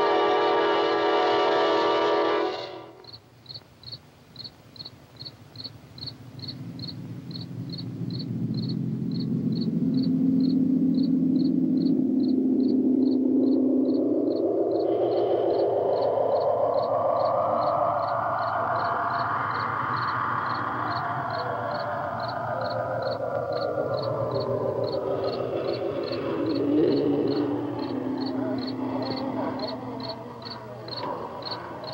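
Film soundtrack: steady cricket chirping, a couple of chirps a second, under eerie horror-film music. A loud sustained chord cuts off suddenly about three seconds in, then a drone slowly rises in pitch and swells before sinking again in the second half.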